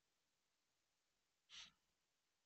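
Near silence, with one short, faint breath about one and a half seconds in.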